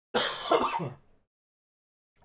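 A man coughs once to clear his throat, a single burst lasting under a second.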